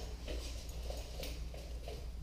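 Faint, soft, irregular sounds from a dog moving about close by, a few quick scuffs or breaths, over a steady low hum.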